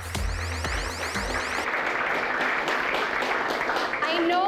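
Electronic dance music with a steady kick-drum beat, about two beats a second, fading out about one and a half seconds in, under audience applause that carries on to the end.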